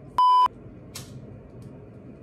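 A single short electronic beep, one steady tone lasting about a third of a second, just after the start. A faint brief click follows about a second in.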